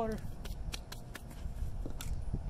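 Hands brushed and rubbed briskly against each other, a quick run of about half a dozen light dry slaps in the first second or so.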